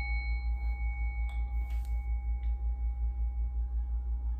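A struck metal instrument for energy cleansing rings out as one clear, steady pitch with fainter higher overtones, sustaining evenly and slowly fading.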